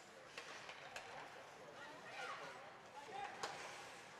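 Faint ice hockey rink sound during live play: a few sharp clicks of sticks and puck on the ice, and distant calls from the players.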